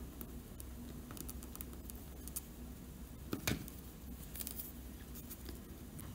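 Faint clicks and light taps of small metal craft parts and needle-nose pliers being handled on a tabletop, with one louder click about three and a half seconds in, over a low steady hum.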